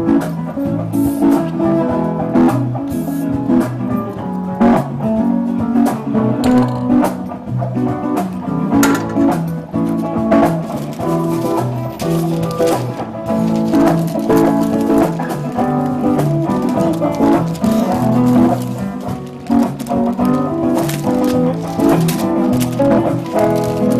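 Live Latin jam band playing, with plucked guitar over a steady percussion beat.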